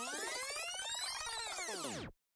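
Rewind sound effect: a layered electronic whirr whose pitch sweeps up through the first second and back down through the second, stopping abruptly at the end.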